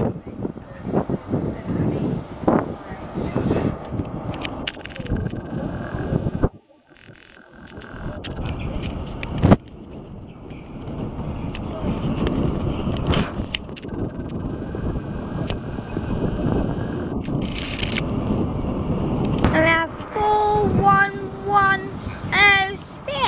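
First Great Western High Speed Train's Mk3 coaches rolling slowly past into the platform: a steady rumble of wheels on rail with clattering, broken by a brief near-silent gap about six and a half seconds in. A voice is heard near the end.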